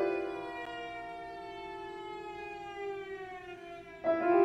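Cello holding a long bowed note that slides slowly downward in pitch, a glissando, fading after a loud attack. Piano resonance rings beneath it.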